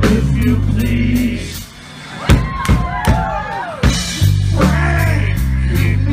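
Live rock band with electric guitar, bass and drum kit playing loudly. About two seconds in the band drops away into a short break of separate drum hits and swooping, bending guitar notes, and the full band comes back in about four seconds in.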